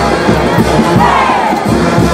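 Festive dance music with a crowd shouting and cheering over it.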